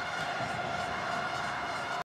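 Steady stadium crowd noise from a football match broadcast, an even background roar with a faint held tone through it.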